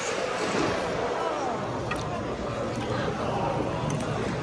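Indistinct background voices and steady room noise in a large school cafeteria, with no clear words.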